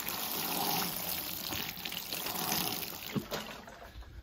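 Water showering from a plastic watering can's rose onto potted seedlings in a plastic basin, a steady splashing patter that dies down near the end.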